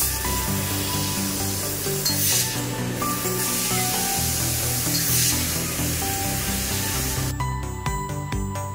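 Background music over the even hiss of a tube fiber laser cutting a metal tube, the hiss swelling twice. Near the end the hiss stops and only the music remains.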